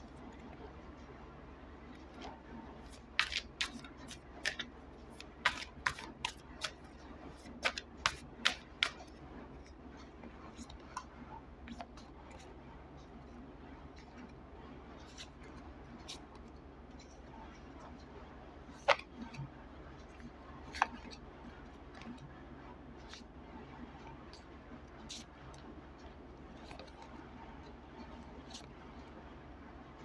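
A deck of tarot cards being shuffled by hand: a run of sharp card clicks and snaps in the first several seconds, then only a couple of isolated clicks, over a faint steady low hum.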